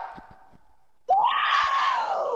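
A woman screaming: one long cry starting about a second in, rising then falling in pitch, after the tail of a man's shout dies away.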